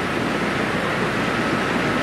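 Steady, even background noise of an outdoor diving venue's ambience, with no distinct events.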